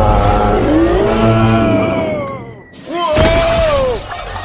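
A cartoon eagle character's long, drawn-out battle-cry yell with wavering pitch, which fades out about two seconds in. About a second later comes a sudden crash with shattering, under a high scream.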